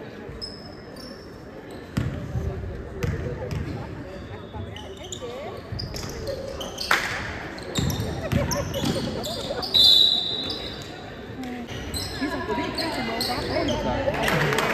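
Basketball bouncing on a hardwood gym floor during play, with voices in the gym. A brief, loud, high-pitched sound about ten seconds in.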